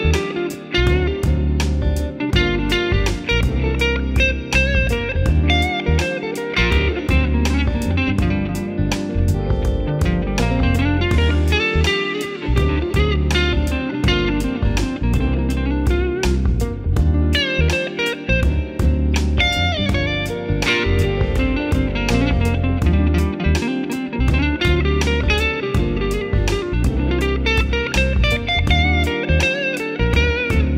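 Fender Custom Shop 1959 Telecaster Journeyman Relic electric guitar played: a continuous run of picked single notes and chords, with bent notes gliding up and down in pitch.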